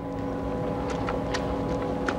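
Steady droning background hum of a busy airport check-in hall, with a few faint ticks.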